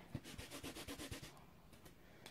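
Clear stamp on an acrylic block scrubbed back and forth on a Stampin' Scrub pad to clean off ink: a quick run of faint rubbing strokes, about six a second, that tails off in the second half.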